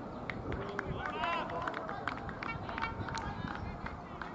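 Open-air ambience at a cricket ground: distant voices of the players over a steady background noise, with many short high-pitched chirps and ticks scattered throughout.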